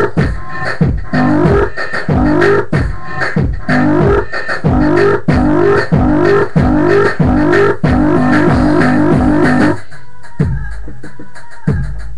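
Home-made electronic beat playing back: a looped, plucked bass-like riff repeating over drum hits. The riff drops out about ten seconds in, leaving a held low note and sparser drum hits.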